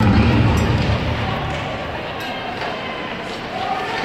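Ice hockey arena ambience heard through the rink glass: a steady crowd murmur and voices, with a few faint sharp clicks of sticks and puck during play in front of the net.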